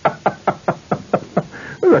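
A rapid run of knocks on a hard surface, about six a second, slowing slightly and stopping about a second and a half in.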